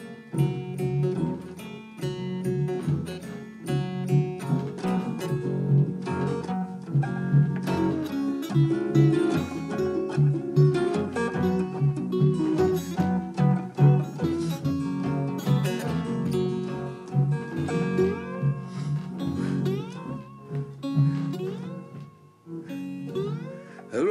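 Instrumental break of a string-band song: strummed acoustic rhythm guitar and a slide diddley bow playing lead runs over a washtub bass, with sliding notes in the second half.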